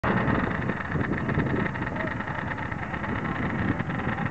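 Snowmobile engines running steadily in the staging area, with people's voices talking over them.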